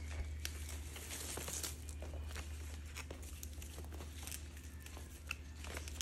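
Faint rustling and crinkling of stiff ti leaves being handled as a leaf is inserted into plastic twine and tied, with small scattered clicks. A steady low hum runs underneath.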